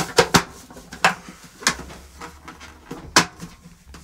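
Plastic element cover being snapped back onto an electric water heater cylinder by hand: a few sharp plastic clicks and knocks, two close together at the start, then single ones about a second in, about a second and a half in and about three seconds in.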